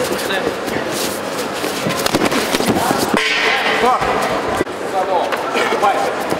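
Voices shouting in a large hall, with sharp smacks of gloved punches and kicks landing at irregular moments.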